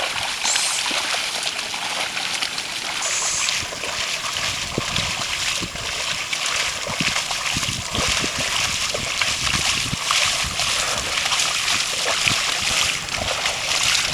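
A carabao (water buffalo) and the plow it drags splashing steadily through the water and mud of a flooded rice paddy.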